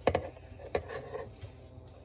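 A few light knocks and clinks as a stainless steel milk frother jug is tipped against the rim of a glass mason jar, pouring frothed almond milk foam onto iced coffee. There are two sharper knocks, one right at the start and one under a second in, with softer clicks after.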